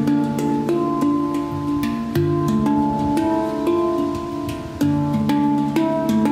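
Handpan played by hand: struck steel notes ringing on and overlapping in a melodic pattern, with a deep low note struck twice, about two and a half seconds apart.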